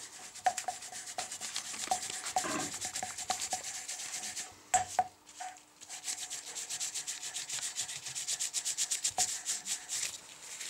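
A valve being hand-lapped into its seat in a Sabb J2 marine diesel cylinder head with grinding paste: rapid back-and-forth rasping strokes as the valve is twisted against the seat. A short break about five seconds in is marked by a couple of knocks.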